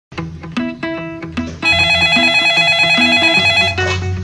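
Plucked-guitar music with a bass line, then about a second and a half in a desk telephone starts ringing with a steady electronic ring over the music, stopping just before the end.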